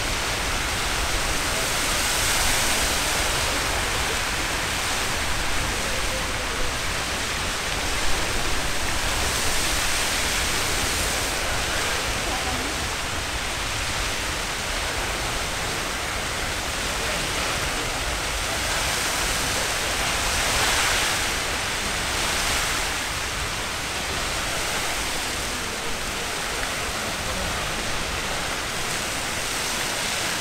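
Castle Geyser erupting in its water phase: a steady rush of water and steam jetting from the sinter cone, swelling slightly about two-thirds of the way through.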